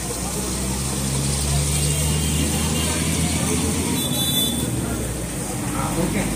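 A motor vehicle engine runs nearby with a low hum that swells in, holds for a few seconds and fades away, like a vehicle passing. A brief high ringing tone sounds about four seconds in.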